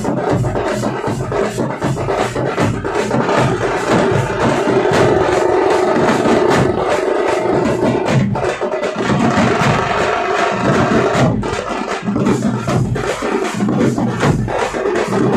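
A tamate troupe drumming: many tamate frame drums beaten with sticks in a fast, unbroken rhythm, together with large stand-mounted bass drums.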